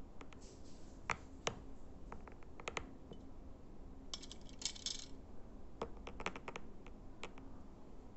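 Fingers tapping and handling a small flag-printed box with a wire handle: scattered light clicks and taps, with a denser scratchy clatter about four to five seconds in as the box and its lid are moved.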